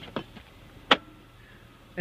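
2014 Honda CR-V's split rear seatback released by the pull handle in the cargo area: one sharp clack about a second in as the seatback unlatches and folds forward.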